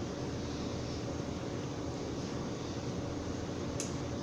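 Steady background hiss with a faint low hum, like a running fan or burner, and one soft click near the end.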